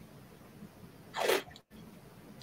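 Blue painter's tape ripping once, a short rasp about a second in, against an otherwise quiet background.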